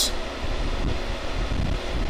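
Steady hum and whoosh of ventilation fans or air conditioning, with a low rumble.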